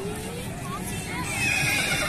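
A horse whinnying: a high, wavering call that begins a little over a second in and falls in pitch.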